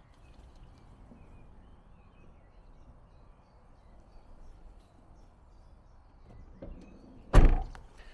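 Steady outdoor background noise with no clear source, then a single heavy thump near the end that rings briefly.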